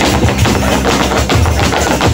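Mexican folk music with guitar playing over a loudspeaker, with the rapid stamping of zapateado footwork on a wooden stage: sharp taps about five times a second.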